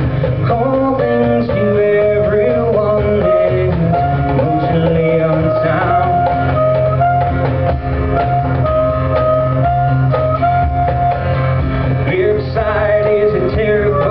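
Live band music: a strummed acoustic-electric guitar over a drum kit, with a man singing at times.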